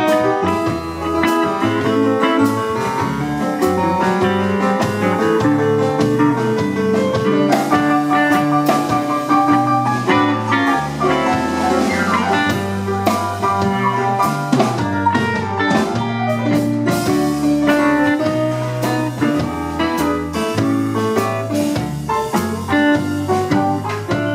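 Live band playing an instrumental break with no singing: a Studiologic keyboard played with both hands over a steady beat and bass line, in a bluesy groove.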